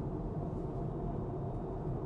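Steady road and tyre rumble heard inside the cabin of an electric Tesla Model 3 Performance cruising on a freeway at about 62 mph.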